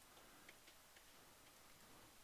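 Near silence: faint room hiss with a few light clicks in the first second or so, made while writing on a digital drawing screen.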